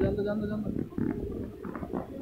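Voices talking, with no other clear sound standing out.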